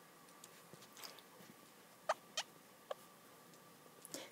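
Faint stylus strokes on a tablet screen while handwriting: soft ticks, then three short, sharper squeaks a little after two seconds in.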